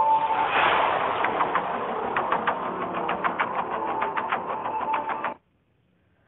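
Tail of a radio programme jingle: a swell of noise, then rapid, even clicking of about five a second over a held tone, cutting off suddenly about five seconds in.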